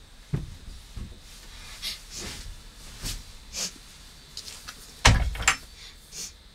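Scattered knocks and rustling as a person moves about inside a small wooden treehouse, with a louder pair of thumps about five seconds in.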